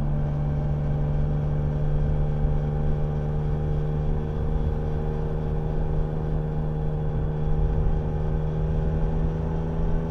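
Yamaha Niken GT's three-cylinder engine running at a steady cruising speed on the motorway, with wind and road noise. The engine note holds steady and starts to rise slightly near the end.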